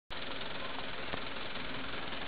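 Engines of slow-moving military jeeps running, heard as a fairly quiet, steady engine noise.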